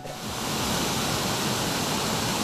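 Waterfall pouring over a rock ledge into a river pool: a steady, even rush of falling water.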